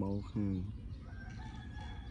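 Two short spoken syllables from a man's voice, then a faint, drawn-out bird call that holds steady in the background through the second half.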